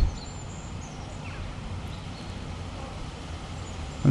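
Diesel multiple unit approaching: a faint, steady low rumble, with a few faint bird chirps.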